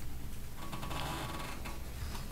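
Steady low hum of a meeting room's sound system, with a soft rustle of paper being handled starting about half a second in and lasting about a second.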